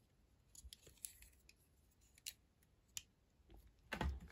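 Near silence with a few faint, scattered clicks of small plastic Lego pieces being handled in the fingers.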